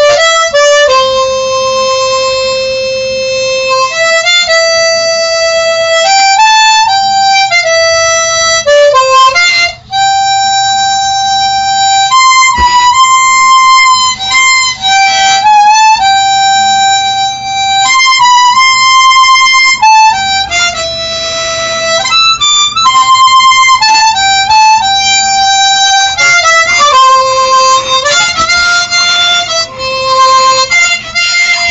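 Harmonica played solo: a slow melody of long held single notes that step up and down in pitch, with a few short breaks between phrases.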